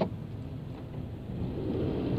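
Car cabin noise while driving: a steady low engine and road rumble heard from inside the car, growing slightly louder near the end.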